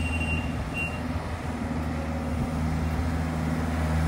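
Engine of a pneumatic rubber-tyre asphalt roller running steadily as it works across fresh asphalt, a low even hum, with two short high beeps in the first second.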